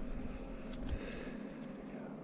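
Faint rubbing of a cloth shop rag as a small metal part is wiped clean by hand, with a few soft ticks from handling it.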